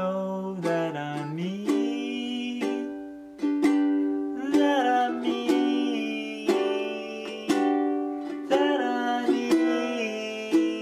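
Mitchell ukulele strummed slowly, a chord about once a second, under a man's singing voice.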